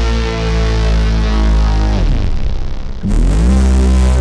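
SkyDust 3D software synthesizer playing a loud, dense sustained note held off pitch by a pitch envelope whose sustain is set to an extreme value. About two seconds in the note is released and its pitch slides down, and about a second later a new note glides up from below and settles on its detuned sustain pitch.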